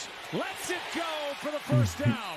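Only speech: a man's voice, low and indistinct, louder briefly near the end.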